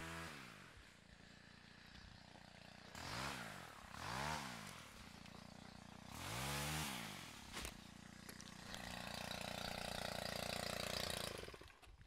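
A faint small engine revved up and back down three times, then held at a steady speed for about three seconds near the end.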